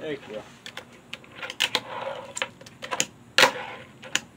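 Tech Deck fingerboard clacking on a wooden tabletop: a scattered series of sharp clicks as the little board's deck and wheels strike the table during tricks, the loudest about three and a half seconds in.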